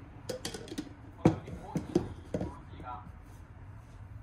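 AeroPress plastic brewing chamber being set onto a glass server full of ice: a run of clicks and knocks of plastic on glass, with the loudest knock about a second in.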